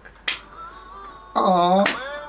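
An a cappella vocal arrangement plays faintly, with sharp finger snaps about a second and a half apart. Near the end a loud, short vocal sound rises over it.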